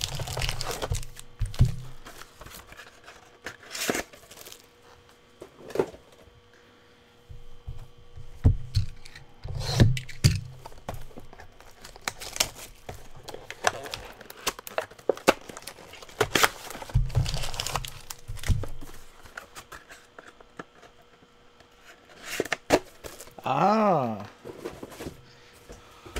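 Foil trading-card packs being torn open and their wrappers crumpled: scattered tearing and crinkling rustles with a few dull knocks.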